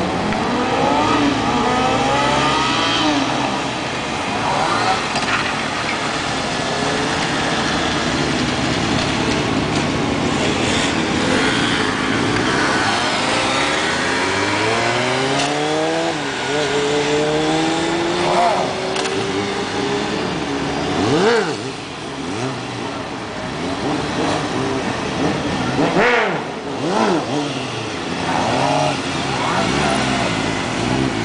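Sport motorcycle engines revving hard and repeatedly, their pitch climbing and falling with the throttle as the bikes are held up on wheelies. More than one bike runs at once, their engine notes overlapping.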